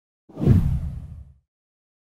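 A single whoosh sound effect for an on-screen transition. It swells quickly with a deep low rumble under it and fades out within about a second.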